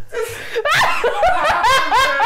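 A woman laughing loudly, a run of quick rising laughs that starts about half a second in.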